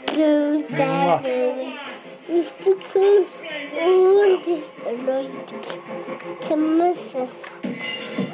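A toddler babbling in a sing-song voice, as if rapping, with his pitch sliding up and down from phrase to phrase.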